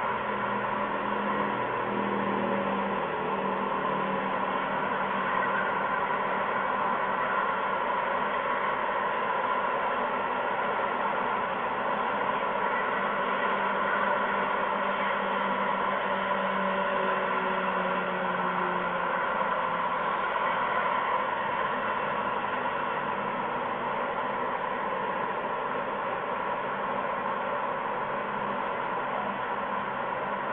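Steady background noise with a low hum that fades out about two-thirds of the way through.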